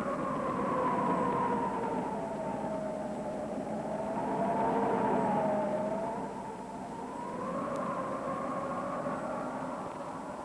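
Film score music for the opening credits: several long, held melody notes move together, slowly falling and rising in pitch and swelling twice, over steady hiss from an old film soundtrack.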